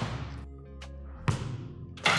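Background music, with the thuds of a struck football: one dull hit at the start and a sharper, louder one a little past halfway.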